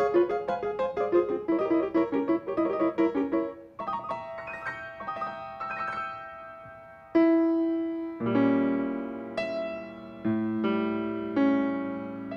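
Grand piano played solo: a fast stream of notes, then softer, slower notes, and from about seven seconds in, loud sustained chords that reach down into the bass and are left ringing.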